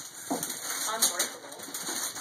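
Metallic foil gift wrap being torn and crinkled as it is pulled off a large box, with a sharp crackle about a second in.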